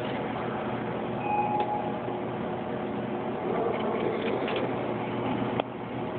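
Claw machine's gantry motor running steadily as it carries the claw over the prizes, with a short beep about a second in. The carriage stops with a click near the end.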